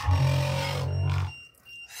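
Voice recording played back at a greatly slowed rate through audio editing software: a deep, drawn-out, wavering sound with a hiss above it that stops about a second and a half in.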